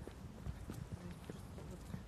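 Footsteps of a person walking on a hard surface, a quick even run of faint steps, picked up by a handheld phone's microphone.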